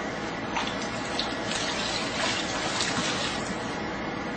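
Water splashing and sloshing in a large metal pan as two hands work wet, oil-soaked hay in it, in an irregular, steady patter.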